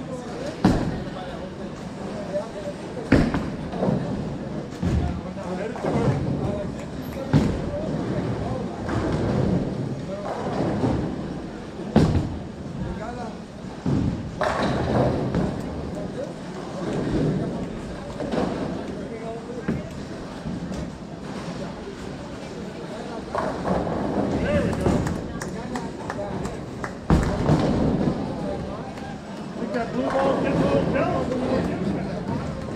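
Bowling alley sounds: bowling balls thudding and crashing into pins several times, sharp knocks scattered through, over steady background chatter.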